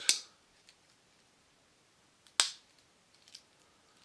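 Victorinox Tinker Swiss Army knife tools being folded shut. There are two sharp snaps as the spring-loaded tools close, one right at the start and a louder one about two and a half seconds in, with a few faint clicks between them.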